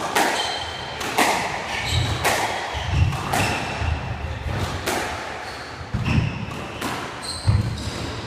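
A squash rally: the ball cracks sharply off the rackets and the walls about once a second. Between the hits come short high squeaks of court shoes on the wooden floor and the dull thuds of the players' footsteps.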